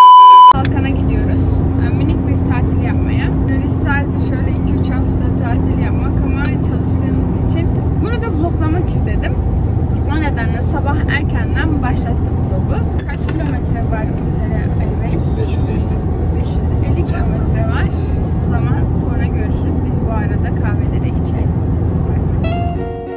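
Steady low road and engine noise inside a moving car's cabin, under a woman talking. It opens with a loud, half-second test-tone beep.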